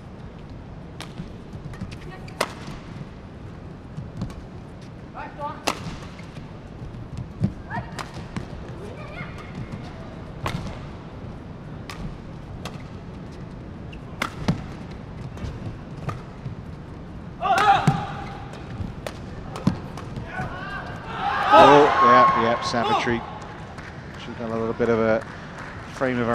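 A badminton rally: racquets strike a feather shuttlecock with sharp cracks about every one to two seconds, back and forth. Loud shouts break out about two-thirds of the way in as the rally ends.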